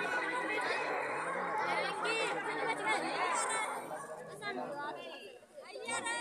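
Several people talking over one another, a murmur of overlapping voices that drops away briefly near the end.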